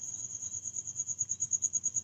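A steady high-pitched trill, pulsing about a dozen times a second.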